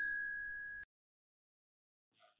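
Notification-bell 'ding' sound effect ringing out with a few clear, steady pitched tones and fading, then cut off abruptly just under a second in.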